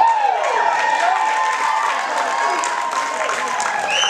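Spectators in the stands cheering and yelling with scattered clapping, many voices overlapping, as the batter reaches third on a triple.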